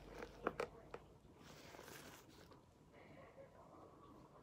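Faint handling sounds from painting at a desk. There are a few soft taps in the first second, then a quiet scratchy rustle.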